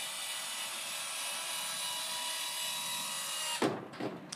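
Coop Controls automatic coop-door actuator motor running steadily with an even whir as its arm pulls the door closed. It cuts off abruptly about three and a half seconds in with a knock.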